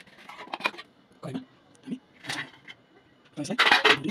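A person speaking in short, broken-up fragments with pauses between them, the loudest just before the end.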